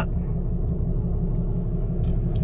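A 2021 Ram 3500's 6.7-litre Cummins inline-six turbodiesel idling steadily, heard from inside the cab.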